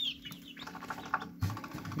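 Young chicks peeping: a few short, falling peeps and a quick run of notes in the middle, over a low steady hum.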